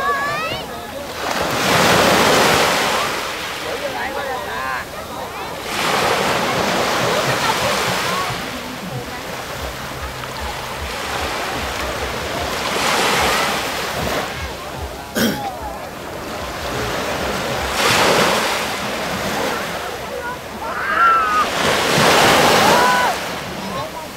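Small waves breaking on a sandy beach and washing up the shore, the surf swelling and falling away every few seconds.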